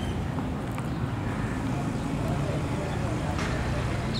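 Steady low rumble of outdoor background noise, with faint voices behind it.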